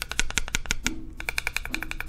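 Loose LiPo battery inside an Innokin iTaste MVP 3 Pro box mod clacking back and forth against the walls of the case as the mod is shaken, a fast run of rattling clicks. A mod should not rattle, and the loose battery is taken as a sign that its foam pads have come free, which the owner finds dangerous.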